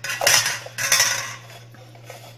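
A metal utensil scraping against a cooking pot in two strokes of about half a second each.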